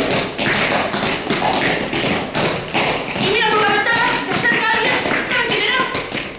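Children beating rapidly on a floor of foam mats, a dense run of taps and thumps that makes a story's approaching noise, with voices joining in about halfway through.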